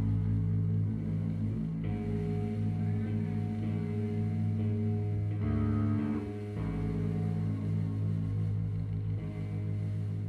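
Amplified electric guitar and bass playing live, holding long droning notes and chords that shift every second or so, with no drumbeat.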